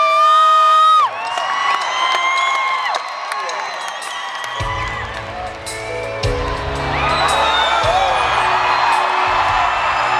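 Arena crowd cheering and whooping, opening with one loud high-pitched whoop. About four and a half seconds in, the live band starts a song, with bass notes changing about every second and a half under the crowd noise.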